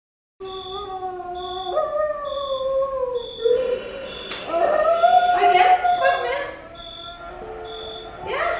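A woman in labour moaning loudly, long drawn-out cries that jump up and then slide down in pitch, the loudest in the middle. A hospital monitor beeps steadily in a high tone a little more than once a second.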